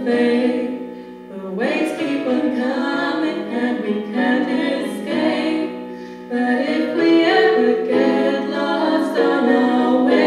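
A small group of women singing a slow song in harmony, holding long notes, with little or no accompaniment. The voices dip briefly about a second in and again around six seconds, then swell back.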